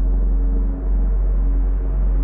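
Dark ambient music: a deep, steady bass drone with long held tones above it.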